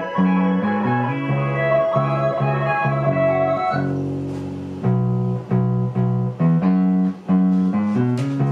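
Music playback of a plucked bass line from Kontakt's default Rickenbacker bass sample patch, repeating short low notes over a twinkly, spacey keys loop. The higher loop layer fades about four seconds in, leaving mostly the bass notes.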